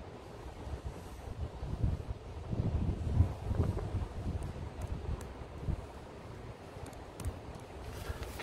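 Wind rumbling on the microphone, gusting louder for a couple of seconds in the middle, with a few faint ticks near the end.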